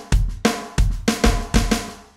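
Electronic drum kit playing a train beat: a fast single-stroke roll on the snare with accented strokes and bass drum hits under it, with an extra accent on the and of beat two in the second bar. The playing stops near the end, the last hit fading out.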